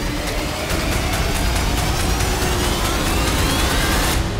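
Intro music with a steady rising sweep that builds throughout and cuts off suddenly near the end.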